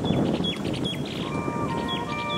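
Brass band music outdoors: a noisy, rustling first second, then held notes come in a little over a second in.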